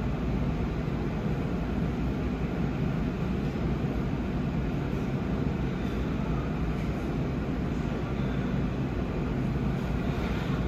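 Steady low mechanical hum of a rolled-ice-cream cold plate's refrigeration unit running, keeping the frosted steel pan frozen.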